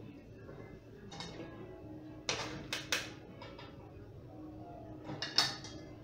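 Metal strainer and spoon clinking and clattering against stainless steel bowls and a metal pie plate. There is a light clink about a second in, a group of sharp clatters around two to three seconds, and the loudest clatter near the end, over soft background music.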